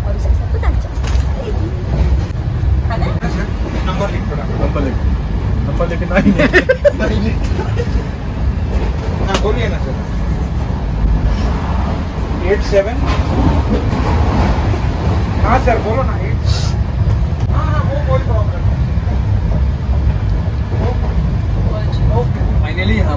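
Steady low rumble of a moving passenger train heard from inside a sleeper coach, with scattered voices and laughter over it.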